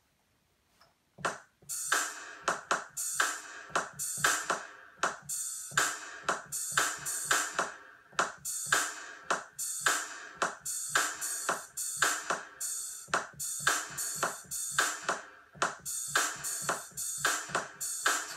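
Drum Pads 24 app on a tablet playing sampled electronic beats and synth sounds, triggered by finger taps on its pads. The pattern starts about a second in and keeps a steady rhythm of sharp drum-machine hits with melodic layers over them.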